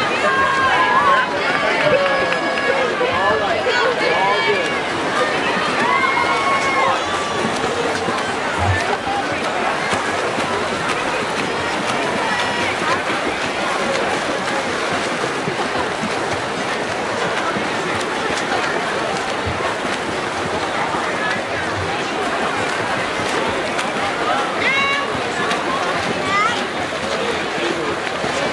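Swim-meet crowd cheering and shouting for the relay swimmers, many voices at once over a steady wash of noise. Shouts are thickest in the first few seconds and again near the end, with swimmers' splashing mixed in.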